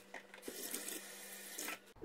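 Cold tap water running into a bowl at the kitchen sink to soak gelatin leaves. It starts just after the beginning and stops shortly before the end, with a light knock about half a second in.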